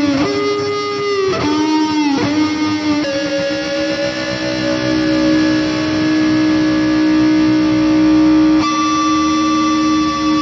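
Starcaster electric guitar played through a Boss IR-200 amp and cabinet simulator: a lead line with string bends in the first few seconds, then one note held for about five seconds, and a new held note struck near the end.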